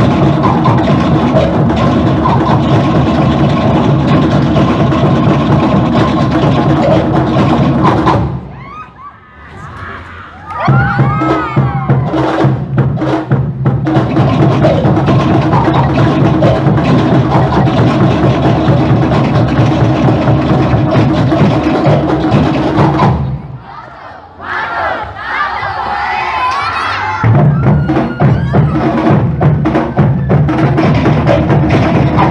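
Tahitian drum ensemble of to'ere slit-log drums and pahu drums playing a fast, driving 'ote'a dance rhythm. The drumming breaks off twice, about 8 seconds in and again about 23 seconds in, for a few seconds of shouts and cheering, then starts again.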